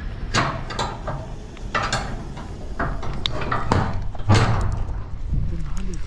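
Corrugated sheet-metal gate being handled at its latch: a series of sharp metallic knocks and rattles, the loudest about four seconds in, over a steady low rumble.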